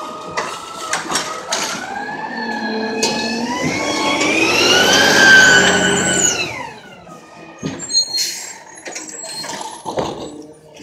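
Curbtender G4 garbage truck accelerating past at close range. Its whine rises in pitch as it speeds up, is loudest as it goes by about five seconds in, then drops in pitch and fades as it drives away. Scattered clicks and knocks are heard at the start and near the end.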